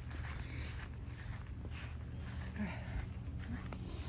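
Quiet footsteps on grass and the rustle of a handheld phone camera being carried, over a steady low rumble.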